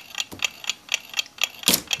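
Small, irregular metallic clicks, several a second, from the winding ratchet of a Sessions eight-day clock movement as its going-side mainspring is slowly let down with a let-down tool, the click held back with a screwdriver.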